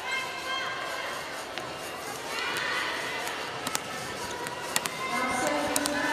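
Indoor volleyball arena ambience between rallies: crowd voices and music, with a few sharp thuds of a volleyball bouncing on the court.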